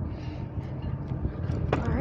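Kick scooter wheels rolling on a concrete floor, a steady low rumble.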